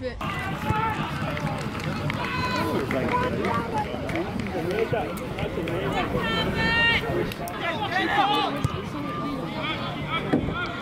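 Voices shouting across a football pitch during play: several calls from players and spectators over a steady outdoor hubbub, with a longer, held shout about six to seven seconds in.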